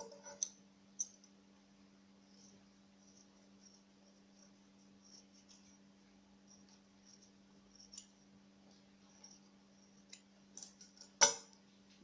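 Metal scissors snipping the strands of a small yarn pompom as it is trimmed: a few faint snips scattered through, over a faint steady hum. One much louder sharp click comes near the end.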